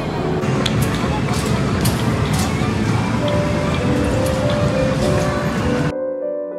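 Loud, busy arcade hall ambience: a steady mix of crowd chatter and music from the game machines, with scattered short clicks.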